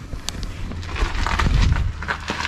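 Handling noise from a hand turning the camera around: rubbing and faint clicks, with a low rumble on the microphone that is strongest about a second and a half in.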